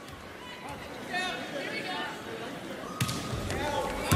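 Indoor volleyball rally with arena crowd noise and scattered voices, and a sharp hit of the ball about three seconds in.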